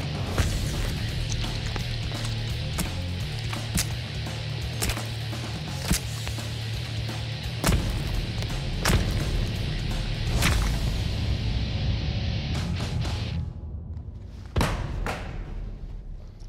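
Dramatic background music under a run of sharp impacts, about one a second: an edged knuckle-duster stabbing and punching into a ballistics gel dummy. The music drops out near the end, and a few last thuds follow.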